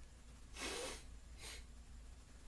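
Two short breaths through the nose: the first, about half a second in, is the louder and lasts under half a second; the second, a second later, is shorter and fainter.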